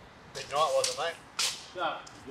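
A person's voice making short sounds that rise and fall, with a few sharp hissing strokes between them.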